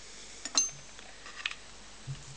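Quiet handling sounds as a shawm and its freshly finished reed are picked up from a wooden table: one sharp click about half a second in, then a short soft scrape a second later.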